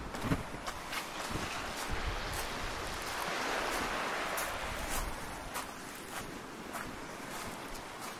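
Footsteps crunching on a pebble beach, about two steps a second, with a rushing noise swelling about three to five seconds in.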